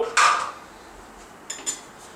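Kitchenware being handled: a short scrape, then two light clinks about a second and a half in.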